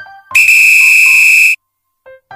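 Countdown timer's end buzzer: one loud, steady electronic buzz lasting a little over a second, cut off suddenly.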